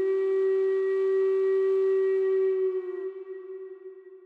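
Native American flute holding one long, steady note that dips slightly in pitch and fades away about three seconds in.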